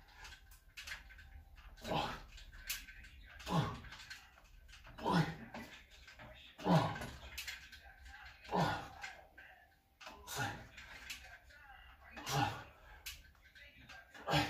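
A man grunting with effort on each rep of weighted dips, bodyweight plus 30 kg: seven short grunts that drop in pitch, about one every 1.7 seconds.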